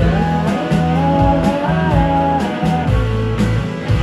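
Rock band playing live: electric guitar, bass and drums under a bending melody line, with a loud hit near the end.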